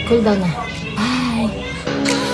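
A woman's voice over background music; near the end the voice stops and the music comes up louder.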